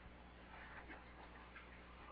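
Near silence: room tone with a steady low hum and faint, scattered ticks and rustles.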